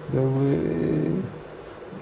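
A man's voice: one word drawn out into a low, creaky hesitation sound for about a second, then a short pause.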